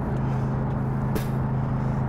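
Steady low hum of an idling engine, with a brief high hiss a little after a second in.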